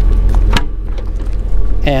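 A sharp click about half a second in, with a few lighter ticks, as the rear liftgate handle of a Jeep Grand Cherokee is worked to release the latch. A steady low rumble runs underneath.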